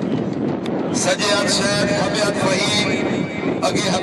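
Hubbub of a large outdoor crowd over a steady rushing noise. A man's voice calls out from about a second in until shortly before the end.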